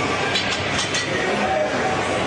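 Loud, dense gym background noise with indistinct voices, and a few sharp clicks about half a second to a second in.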